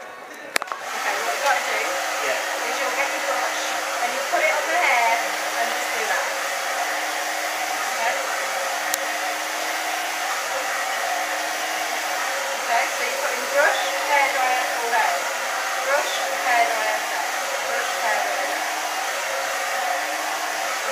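Hand-held hair dryer switched on about half a second in, then blowing at a steady level.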